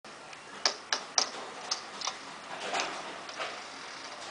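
A handful of sharp clicks and knocks, five in the first two seconds and less sharp ones later, over a faint steady room background, with some rustling near the end.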